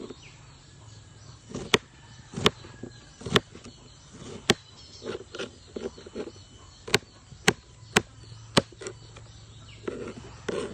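A kitchen knife dicing a cucumber, the blade knocking down on the surface beneath in sharp, irregular chops: about eight loud knocks with softer ones in between.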